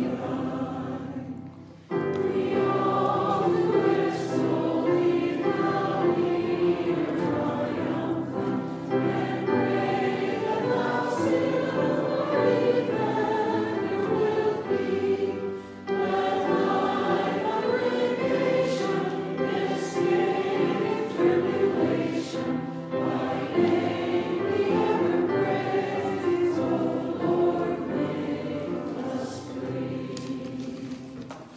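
A church congregation singing a hymn together, many voices in unison, with short breaks about two seconds in and about halfway through.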